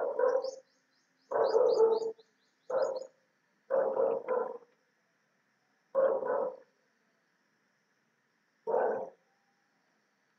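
A series of six short animal calls, each under a second long, spaced irregularly one to two and a half seconds apart, with faint high chirps during the first few seconds.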